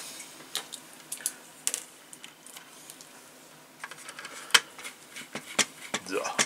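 Light, scattered clicks and taps of a precision screwdriver and hard plastic model parts as screws are driven into a plastic model hull section, the sharpest click about four and a half seconds in.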